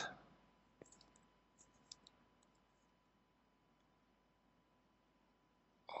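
Near silence with a few faint, short metallic clicks in the first two seconds: a small screwdriver turning the bottom screw of a stainless steel Kayfun 3.1 clone rebuildable atomizer.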